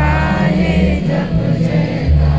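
A group singing an anthem in chorus with music underneath, the held notes carried over a steady low accompaniment.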